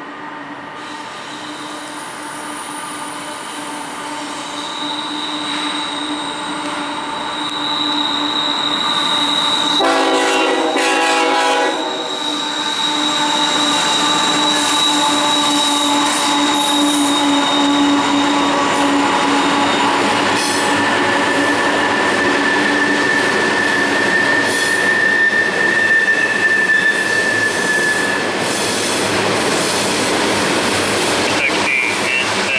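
Loaded CSX coal train led by GE Evolution-series locomotives, approaching and passing, growing louder over the first several seconds. A horn blast of about two seconds comes about ten seconds in. After it, the steady rumble of the loaded cars goes on, with long, high-pitched wheel flange squeals.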